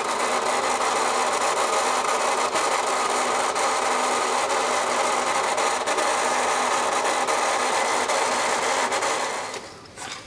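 Battery-powered motor and plastic gear drive of a Marx Big Alarm toy fire truck running steadily as it swings the ladder boom around, cutting off shortly before the end.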